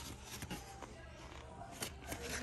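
Quiet store ambience with a few light clicks and rustles of a plastic blister pack being handled, the sharpest click near the end.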